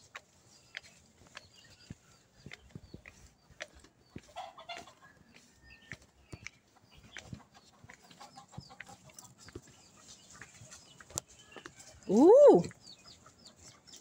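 Faint scattered clicks and steps on a garden path, then near the end one loud chicken call that rises and falls in pitch over about half a second.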